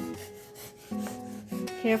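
Background acoustic guitar music, with a kitchen knife cutting green beans on a cutting board: rasping cuts and one knock about a second in.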